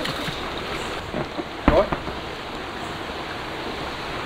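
Steady rushing of water flowing in a shallow rocky creek. A knock and a short vocal sound come about a second and a half in.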